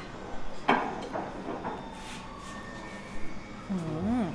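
A few short knocks and clicks of stemmed wine glasses being handled on a wooden table during a tasting, with a brief hummed voice right at the end.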